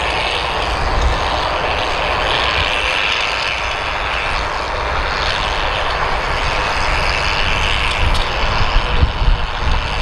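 Steady rushing noise with a low rumble, and uneven low thumps of wind buffeting the microphone near the end.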